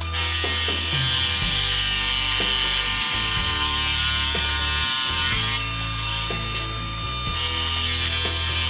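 Milling machine's face mill cutting a solid aluminum block, the sound played back sped up so it becomes a fast, steady rattling chatter. Steady background music runs underneath, with low notes changing every second or two.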